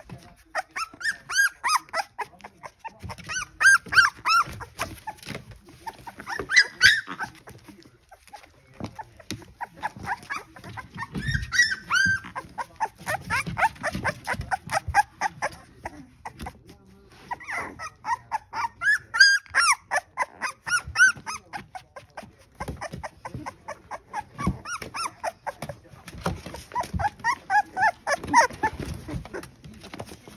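Litter of three-week-old Bully puppies whining and squealing: many short, high-pitched cries overlapping one another, with brief lulls, over low scuffling bumps.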